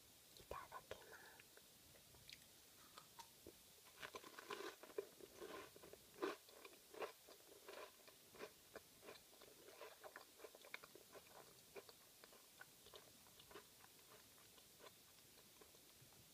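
Close-miked biting and chewing of a Pukupuku Tai, a fish-shaped wafer filled with airy chocolate. A dense run of crisp crunches comes about four to seven seconds in, then sparser small crunches and mouth clicks.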